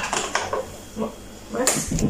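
Short snatches of a girl's voice with a few light clicks and knocks of kitchen handling between them.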